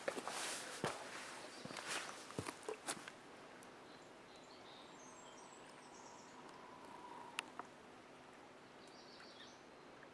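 Footsteps and rustling of a person stepping over the ground and handling a camcorder, a few irregular clicks and scuffs for the first three seconds. Then quiet outdoor lakeside ambience with a few faint high bird chirps.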